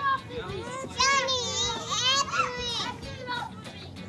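A group of children's voices calling and shouting over one another, high-pitched and excited, with no clear words.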